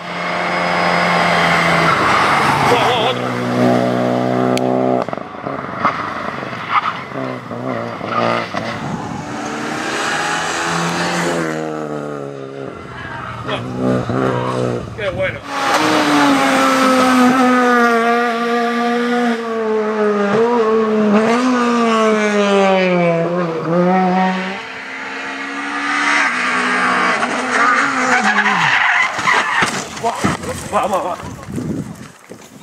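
Rally car engines at full throttle on a stage, revving up repeatedly through the gears and then a long falling engine note as a car slows into a corner.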